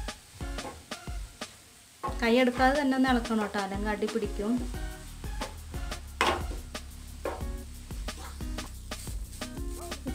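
Wooden spatula stirring and scraping grated coconut around a non-stick frying pan, with a light sizzle as it cooks. Background music with a low beat and a melodic voice runs underneath, loudest about two to four and a half seconds in.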